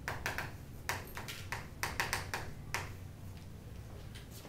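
Chalk on a chalkboard while a word is written: a quick, uneven string of sharp taps and short scratches, about a dozen in all, ending about three seconds in.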